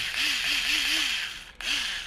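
Small battery motor of cordless electric rotary scissors running unloaded, a whirring hum with a wavering pitch that winds down and stops about one and a half seconds in, followed by a brief blip of the motor near the end.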